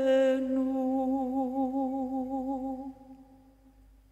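A woman's voice holding the last note of a phrase of Byzantine chant, with vibrato, over a low steady drone; the note fades away about three seconds in.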